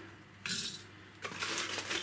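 A spoonful of loose dried-fruit and flower tea tipped into a metal tea strainer, the hard pieces rattling briefly about half a second in. From about the middle on, a run of rustles and small clicks follows as the spoon goes back for more.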